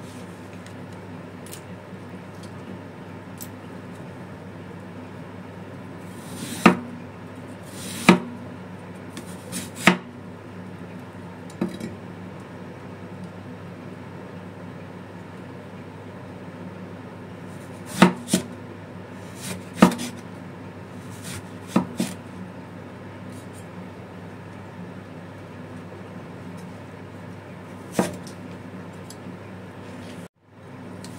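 Chinese cleaver cutting eggplant on a round wooden chopping block: about ten sharp, separate knocks of the blade on the wood, irregularly spaced with long gaps, over a steady low hum.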